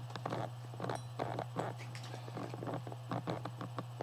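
A run of irregular light clicks and taps over a steady low hum.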